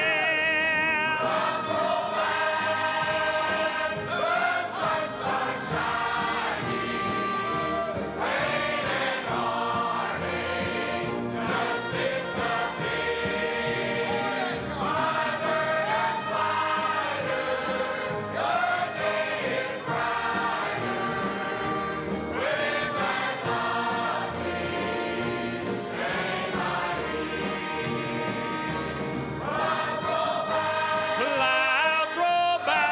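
Large church choir singing together, a gospel song under a director.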